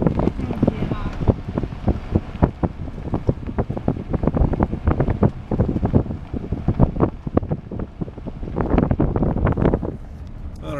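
Wind buffeting the microphone in a moving car, irregular gusts and thumps over the low rumble of the car on the road.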